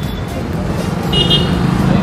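Street traffic passing close by, mostly motorbikes and scooters, with a low engine rumble that grows louder near the end. A short high beep sounds a little after a second in.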